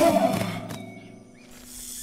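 Cartoon black panther's growl, loudest right at the start and fading away over about a second.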